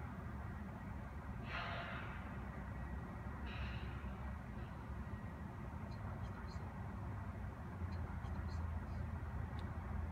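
Steady low outdoor rumble with two short breaths or sniffs from a person near the microphone, about one and a half and three and a half seconds in. The rocket's own sound has not yet arrived.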